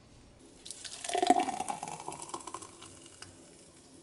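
Slushy frozen margarita being poured from a blender jar into a glass. The liquid pour starts about half a second in, rises slightly in pitch as the glass fills, and tails off after about three seconds.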